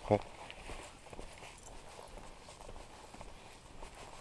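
Footsteps of a person walking on a paved lane, faint, with the soft scrape and tap of shoes.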